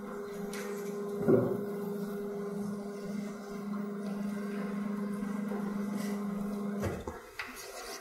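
Electric drive of a motorised lecture-hall blackboard running with a steady hum while the board is lowered; a single knock comes about a second in, and the hum stops near the end.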